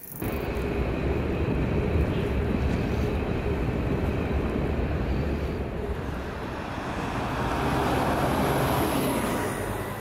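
Steady city street ambience: the continuous rumble of road traffic.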